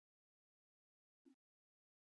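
Near silence: a digital pause between recorded phrases, with only a tiny faint blip about a second in.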